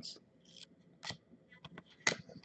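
Faint, sparse ticks and short rustles of trading cards being handled and set down, a few soft clicks spread across two seconds.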